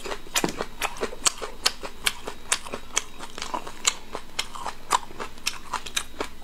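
A person chewing a mouthful of braised pork close to the microphone, with a steady run of sharp, wet smacking clicks, about three a second.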